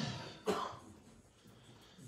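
A single short cough from a person about half a second in, followed by quiet room tone.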